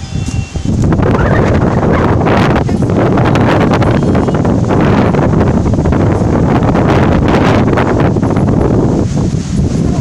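Strong wind blowing across the phone's microphone: a loud, steady rushing noise that starts about a second in and eases off near the end.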